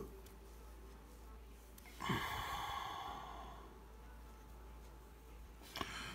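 A man's audible sigh, a breathy exhale about two seconds in that fades out over a second or so, against faint room tone.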